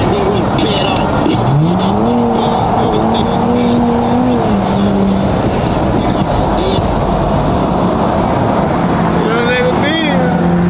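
A car engine revs up sharply, holds its revs for a couple of seconds, then drops back and settles, over steady road and tyre noise heard from inside a moving car's cabin.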